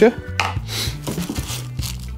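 Plastic packaging rustling and crinkling, with a few light knocks, as parts are handled and lifted out of a cardboard box, over steady background music.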